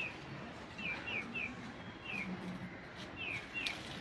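A small bird chirping: short, falling chirps, singly or in quick runs of two or three, repeated every second or so.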